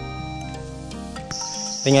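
Acoustic background music that stops about two-thirds of the way in, giving way to a steady high-pitched drone of insects in the forest.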